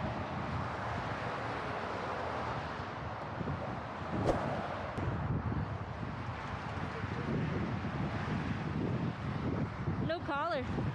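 Steady highway traffic noise from cars passing close by, with wind buffeting the microphone. A sharp click stands out about four seconds in.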